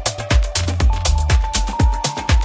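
Progressive house dance track in a continuous DJ mix: a four-on-the-floor kick drum at about two beats a second over a steady bassline, with hi-hats between the kicks. A held synth note comes in about halfway through.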